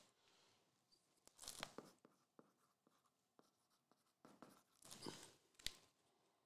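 Near silence with a few faint rustles and scrapes and a short click near the end: a hand handling the shrink-wrapped card boxes on the mat.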